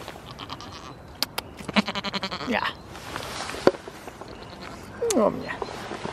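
A goat bleating: one quavering call about two seconds in, lasting about a second, with a few sharp clicks around it.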